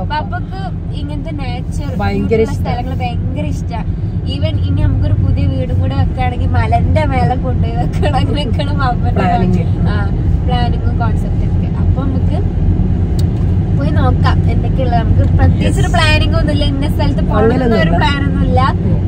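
Steady road and engine rumble inside a moving car's cabin, under people talking.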